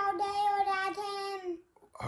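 A young boy singing a few held notes in a high voice, breaking off about three-quarters of the way in.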